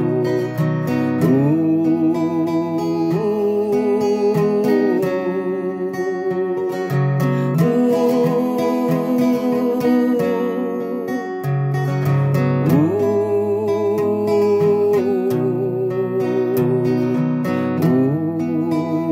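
A man singing a slow ballad in long, wavering held notes, accompanying himself on a strummed acoustic guitar.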